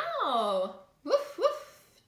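A woman's voice reading aloud in an expressive sing-song: one long greeting that rises and falls in pitch, then two short spoken 'woof's imitating a dog.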